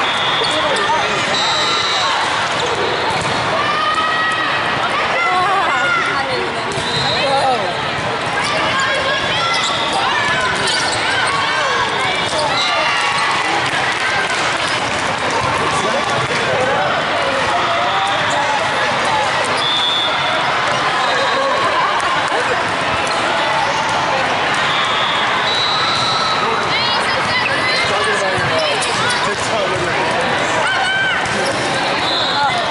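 Din of a large indoor volleyball hall: volleyballs thudding on the courts amid steady overlapping chatter and players' shouts. A few brief high-pitched tones ring out now and then.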